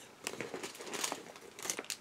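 Crinkling of plastic craft-supply packaging being handled, a run of small crackles and ticks with a few sharper ones near the end.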